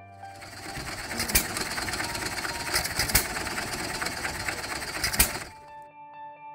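Antique John Deere hit-and-miss stationary engine running, belted to an ice cream freezer: a steady mechanical clatter with three sharp pops about two seconds apart.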